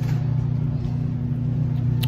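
A steady low hum that holds the same pitch throughout, with no other sound standing out above it.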